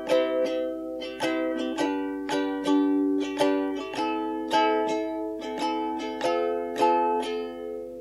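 Background music: a plucked-string instrument playing a gentle melody, one note or chord about every half second, each ringing out before the next.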